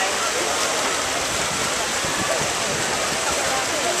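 Steady wash of splashing water from a dense pack of swimmers churning through open water at front crawl.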